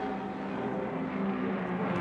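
Steady low drone of a spaceship's engines: several held low tones over a rushing hiss.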